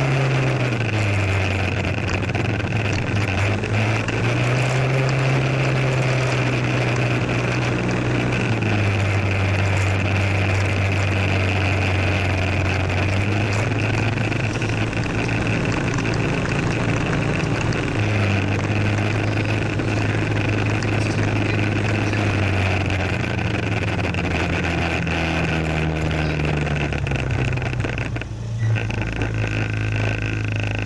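Moped scooter engine running under way, its hum rising and falling in pitch several times as the throttle is opened and eased off, over steady rushing wind and road noise. Near the end the wind noise drops away briefly and the engine settles to a steady, lower note as the scooter slows.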